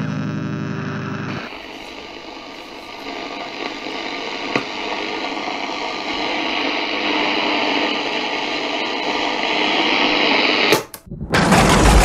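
A held musical chord cuts off about a second in, leaving radio-like static hiss with a faint hum that slowly grows louder, used as a transition between tracks. Near the end it drops out for a moment, then a much louder noise with a deep low end starts abruptly.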